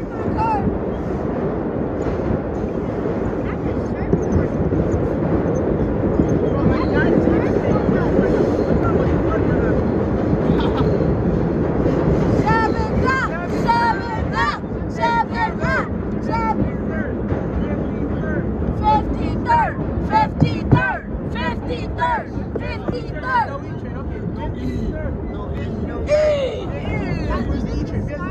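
1932 R1 subway car running through a tunnel: a steady, loud rumble of steel wheels on rail and traction motors. From about halfway through, voices chatter and call out over the running noise.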